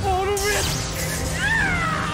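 A spoken incantation breaks off as a sudden, sharp blast of magic-impact sound effect hits. A high, wailing cry that rises and then falls in pitch follows, over background music.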